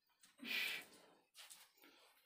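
A person's single short, breathy huff, about half a second long.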